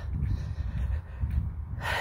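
A woman's heavy breathing while walking out of breath, with a sharp intake of breath just before the end, over a steady low rumble on the phone's microphone.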